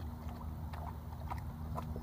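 Water sloshing and small splashes from a dog lying in a shallow muddy creek with its muzzle at the water, with about three short wet clicks, over a steady low rumble.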